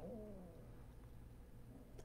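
Near silence: room tone with a faint steady low hum, the last of a man's voice fading out in the first half second.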